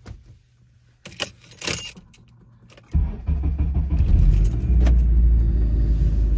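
Car keys jangling, then the car's engine starting about halfway through and running steadily at idle, heard from inside the cabin.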